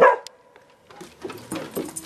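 A dog gives one short, loud bark right at the start, followed after about a second by irregular scuffing and rustling.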